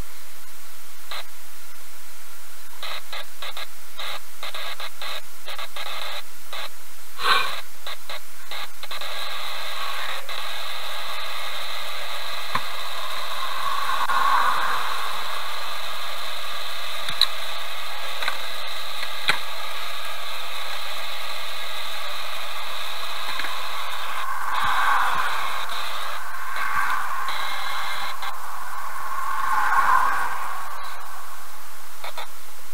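Steady loud hiss like radio static, with scattered clicks in the first few seconds and a buzzing tone through the middle stretch.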